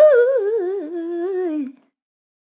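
A wordless female vocal sample in C minor: one sung phrase that scoops up into its first note, wavers with vibrato and runs down in pitch, then cuts off shortly before the end.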